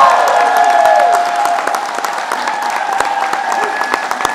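Crowd applauding, with voices sounding over the clapping for the first second and a half before the applause eases slightly.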